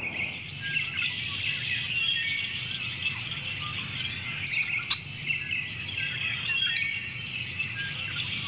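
Several birds chirping and singing at once, a dense run of short high calls and quick gliding notes, over a low steady hum. A single sharp click about five seconds in.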